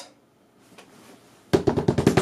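A brief hush, then a snare drum roll starts suddenly about one and a half seconds in, a rapid even run of strokes.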